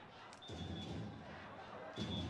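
Faint stadium ambience from the broadcast's pitch-side microphones: a low murmur of crowd and distant voices.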